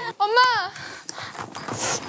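A woman's short high-pitched whoop, rising then falling, followed by softer hissing, breathy noise that brightens just before the end.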